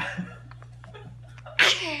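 A sudden short burst of laughter about one and a half seconds in, breaking out sharply and falling in pitch, after a brief breathy sound at the start and a quiet stretch with faint clicks.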